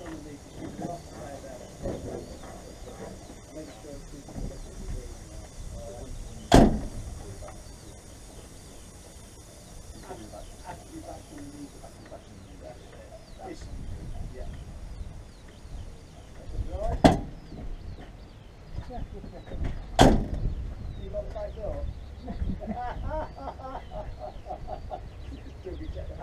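Three sharp knocks around the coupled lorry and trailer, a few seconds apart, over a low steady background rumble.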